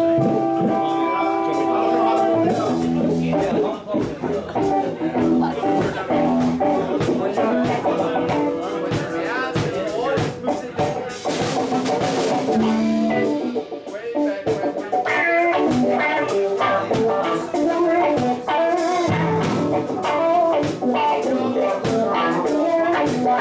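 Live rock band playing through amplifiers: electric guitars and electric bass over a drum kit. A chord is held for the first couple of seconds, then gives way to busy guitar lines with steady drum hits.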